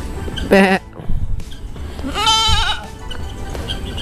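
A young goat bleating once, a high quavering bleat a little after two seconds in.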